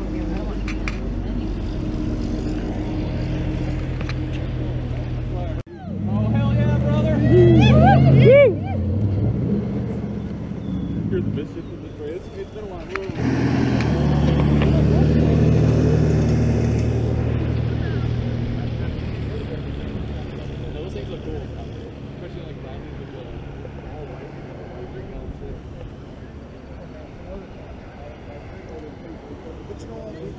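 Cars and pickup trucks driving past on a rural road, engine and tyre noise swelling and fading. A short burst of loud shouting voices comes about six seconds in, and a loud vehicle passes around thirteen seconds in, then fades slowly.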